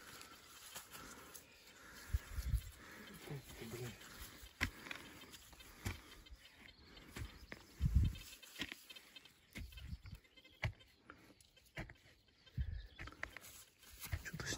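Quiet handling of a dug-up glass bottle in a gloved hand: soil rubbed and knocked off it, with scattered small knocks and a heavier thump about eight seconds in. A few faint short calls rise and fall in pitch a couple of seconds in and again near nine seconds.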